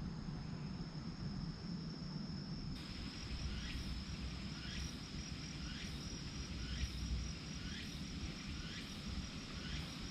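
Crickets singing: a steady high-pitched trill over a low outdoor rumble, joined from about three seconds in by a faint short chirp repeating about once a second.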